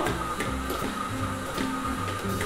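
KitchenAid Artisan stand mixer running, its dough hook kneading bread dough with the sticky sound of the dough pulling itself off the steel bowl, under background music.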